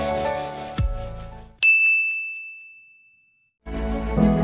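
Background music fades out. Then a single high, bell-like ding strikes and rings away over about a second and a half. After a short gap of silence, new music begins near the end.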